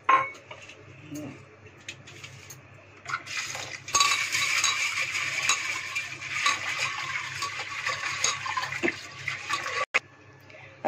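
A metal clink right at the start and light clatter of an aluminium pressure cooker, then about six seconds of tap water running into it while a hand swirls the split dal inside to wash it.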